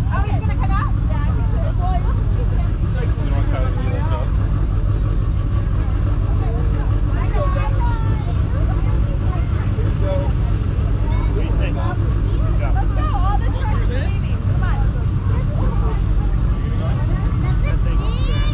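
Fire engine's diesel engine idling with a steady low rumble, with people talking in the background.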